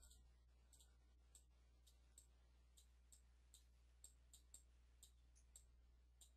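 Near silence with a dozen or so faint, irregularly spaced clicks of a computer mouse being worked over a chart.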